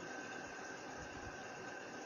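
Steady background hiss with a faint, steady high whine running through it and a few soft low thumps.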